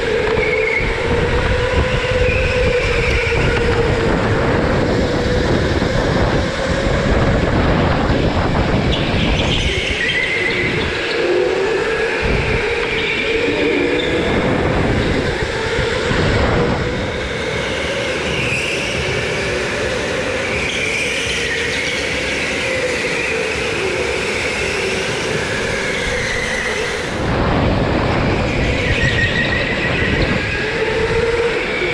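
Indoor racing go-kart running at speed from the driver's seat. Its motor tone rises and falls as the kart speeds up and slows through the corners, over steady tyre and chassis noise.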